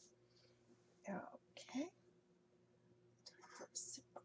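Very quiet whispered speech from a woman, in two short stretches, one about a second in and one near the end, over a faint steady hum.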